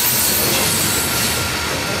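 Coal hopper cars of a freight train rolling past: the steady rumble of wheels running on the rails.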